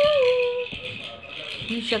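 Plastic baby rattle toys being shaken, giving a continuous fine rattle. A voice holds a single sound briefly at the start.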